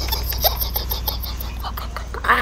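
Rustling and handling noise, with small scattered clicks, as a person climbs into the high front seat of an SUV. A steady low hum runs underneath, and faint voices come through now and then.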